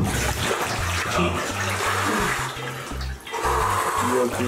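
Bathwater sloshing and splashing as a person sinks down into a tub of ice water, over background music with a steady bass beat.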